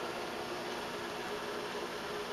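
Steady low hum and hiss of running electrical equipment, with a few faint steady tones underneath.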